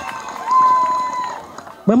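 Public-address microphone feedback: a steady high ringing tone that swells about half a second in, holds for nearly a second and fades away between spoken phrases.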